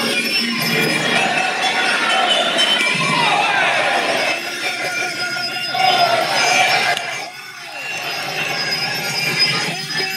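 Fight crowd shouting and cheering, many voices at once, with ring music underneath. The shouting dips briefly about seven seconds in, then picks up again.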